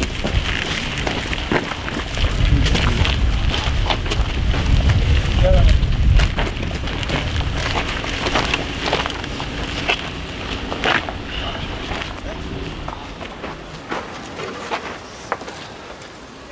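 A wheeled camera cart rolling over a rough dirt road, with a low rumble and many scattered clicks and clatters from the rig and footsteps. The rumble is strongest in the first half and the sound fades toward the end.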